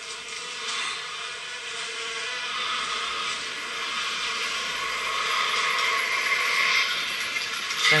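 Film trailer sound design: a steady, grainy, rattling noise that slowly grows louder.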